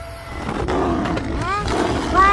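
A fierce animated beast shut in a wooden crate growls, then gives two short cries that rise and fall in pitch near the end.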